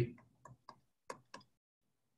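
About half a dozen light, sharp clicks, spaced irregularly in the first second and a half, from a stylus tapping and writing on a tablet screen.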